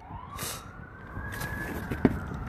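Faint siren, one long wail rising slowly in pitch, with a brief hiss about half a second in.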